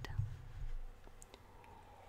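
A few faint clicks of a computer mouse over a low background hum, with a soft low rumble in the first half second.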